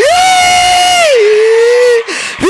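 A man's loud, drawn-out shout into a microphone, held on one high pitch for about a second, then sliding down to a lower pitch that is held again.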